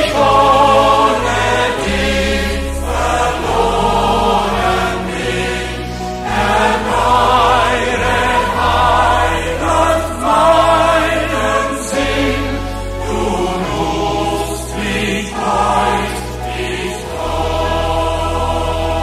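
A large choir singing a hymn in German, recorded live, with voices sustaining notes over held low bass notes that step to a new pitch every second or two.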